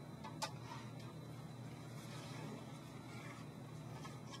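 Faint, steady low hum, with two light ticks about half a second in.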